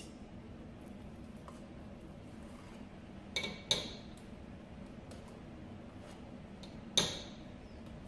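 A metal spoon clinking against a tin can and a stainless steel stockpot while tomato paste is scooped out and knocked into the pot: a couple of light clinks about three and a half seconds in, and a louder clink with a short ring near the end.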